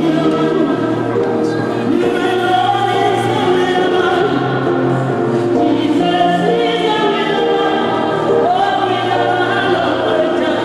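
Choral music: a choir singing over sustained held low notes.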